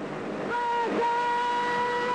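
Rushing water, with a steady whistle-like tone that comes in about half a second in and dips briefly in pitch.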